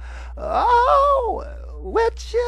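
A singer's wordless, breathy vocal ad-lib, a moan sung without accompaniment. It slides up from low, holds briefly and falls away again.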